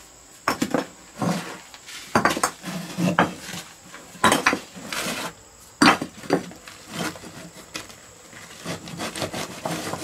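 Gloved hands scraping and clearing loose cement rubble and brick fragments inside the firebox of a brick-and-cement stove. The result is irregular scrapes and knocks of gritty debris, with the loudest coming about four to six seconds in.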